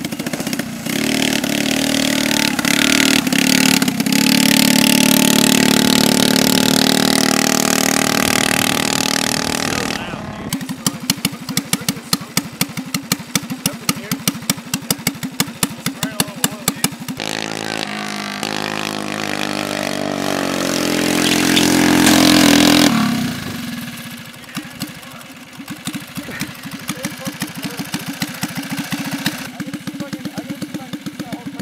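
Small gasoline engine of a homemade go-kart revving up, rising in pitch, then dropping to a pulsing idle. It revs up again and falls back to a quieter idle near the end.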